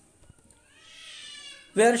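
A faint animal cry, about a second long, falling slightly in pitch.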